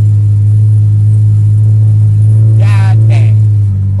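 Steady low drone of a car driving, heard from inside the cabin: a constant low hum from the engine and road. A short vocal sound near three seconds in.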